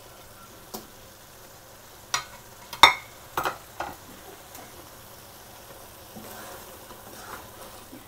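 Fried cauliflower pieces sizzling faintly in Manchurian sauce in a nonstick wok as they are stirred in, with a few sharp knocks and clicks against the pan in the first half, the loudest near three seconds in.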